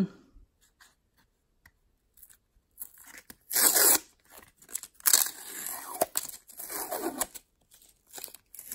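Tape being peeled off a stack of rigid plastic card top loaders in several rasping pulls, the loudest about three and a half seconds in. Light clicks of plastic come from the handling before the peeling.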